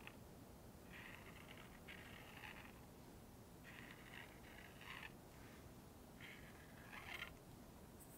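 Faint scratching of an Apple Barrel paint pen's fine tip rubbing across canvas as a petal is coloured in, in about six short strokes of under a second each with brief pauses between them.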